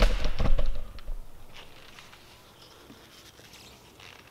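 Camera handling noise, a low rumble with a few knocks, for about the first second as the camera is moved, then a few faint taps and rustles.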